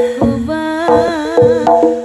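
Live Javanese jaranan accompaniment: drum strokes beating under a high, wavering melody that bends up and down, with steady held tones beneath.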